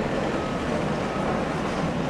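Steady low rumble and hiss of room noise in a large hall, with a faint high steady tone running through it.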